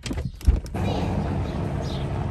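A sharp thump about half a second in, then a police helicopter running overhead, a steady low drone that carries on.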